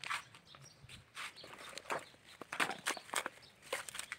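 Dry coconut husk fibres being pulled and torn apart by hand: a run of short, irregular scratchy rips and rustles.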